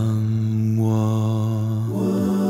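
Multi-tracked a cappella voices holding a wordless sustained chord over a low held bass note; a higher voice layer joins about a second in.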